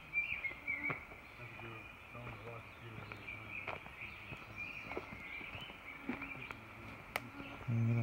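Steady high-pitched chorus of woodland insects, with a few light footsteps on the leaf-littered forest floor.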